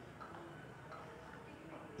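Quiet room tone in a hall, with a few faint scattered background noises.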